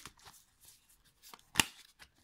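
Tarot cards being handled and shuffled: soft rustling and light clicks, then one sharp card snap about one and a half seconds in.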